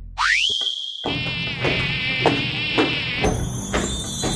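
Electronic intro sound effect: a synthesized tone sweeps sharply up and holds, then turns into a high, wavering buzz over a regular beat of low thuds.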